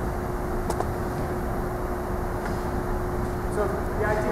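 Steady low rumble of background room noise with a faint steady hum running under it, and a single sharp click a little under a second in.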